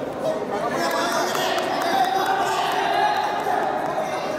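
Children's voices chattering and calling out in an echoing indoor sports hall, with a football tapping and bouncing on the court floor as it is dribbled.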